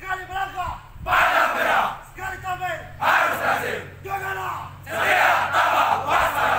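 A squad of police officers chanting a unit yel-yel in call and response: a pitched leading call alternates with a loud shout from the whole group, three times.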